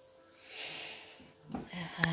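A breathy exhale close to the microphone, then a short low hum of a person's voice near the end.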